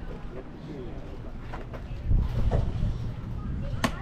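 A pitched baseball popping into a catcher's leather mitt once, near the end, over a low rumble and faint voices.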